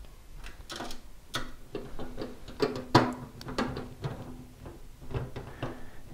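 Screwdriver driving mounting screws through a steel PC drive cage into a 3.5-inch hard drive, making small irregular clicks and metallic scrapes.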